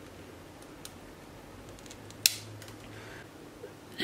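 One sharp snip about two seconds in, with a few faint clicks around it: cutters clipping off unneeded metal header pins on a small circuit board.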